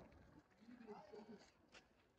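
Faint short whimpering calls from an infant long-tailed macaque about halfway through, followed by a few soft ticks.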